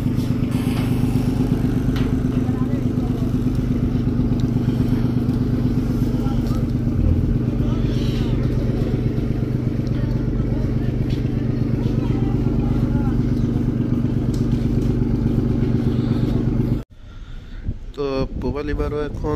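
Diesel engine of a river passenger launch running steadily: a loud, even drone with a rapid throb. It cuts off suddenly near the end.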